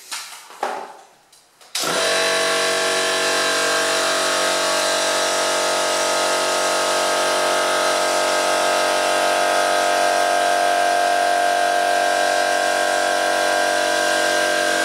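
An air compressor's electric motor switches on suddenly about two seconds in and then runs loud and steady, with a constant hum.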